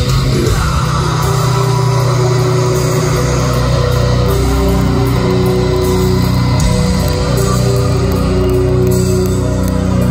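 Heavy metal band playing live in an arena: distorted electric guitars and bass holding long, low notes, loud and continuous.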